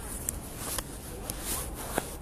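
Footsteps on a pavement, a short click about every half second, over a low steady street rumble.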